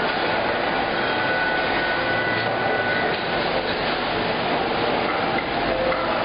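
Steady din of a working factory floor, machinery noise with no clear beat, with a faint high steady tone for about two seconds near the start.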